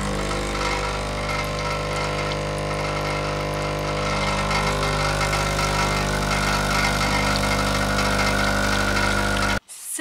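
Espresso machine's pump running with a steady hum as a shot of espresso pours into a cup, cutting off abruptly near the end.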